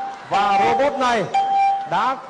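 A steady bell-like electronic tone, the Windows 95 "Ding" alert sound, heard twice over fast speech: briefly, then again for about half a second.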